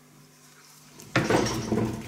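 Metal round bar clattering and scraping against the metal die block of a UB100 bar bender as it is shifted into position, starting suddenly about a second in.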